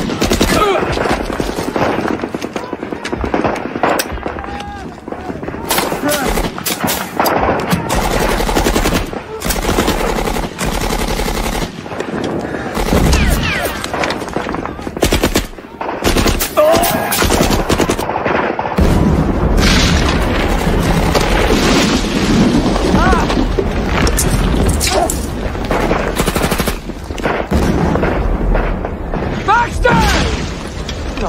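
Heavy gunfire: dense, irregular bursts of automatic fire mixed with single rifle shots, going on without a break.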